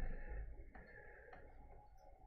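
A low bump dying away at the start, then two faint, short ticks a little over half a second apart.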